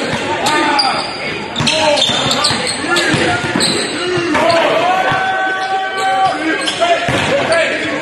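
A basketball dribbled on a hardwood court, with players' voices, echoing in a large gym.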